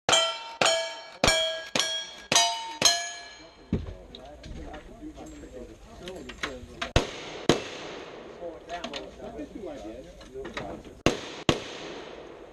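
Six gunshots about half a second apart, each followed by the brief ring of a struck steel target plate. Then voices talk while two more pairs of sharp shots sound, one pair midway and one near the end.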